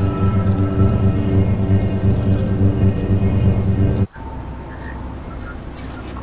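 Loud, steady low electronic drone with a stack of overtones as the mechanical hand lights up with glowing green symbols: the sound of the device activating. It cuts off suddenly about four seconds in, and a much quieter low rumble follows.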